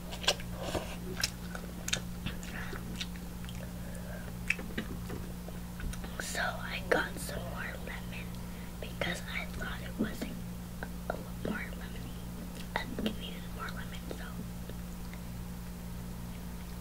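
Instant noodles being chewed close to the microphone: wet chewing and clicky mouth sounds, busiest a little past the middle, over a steady low hum.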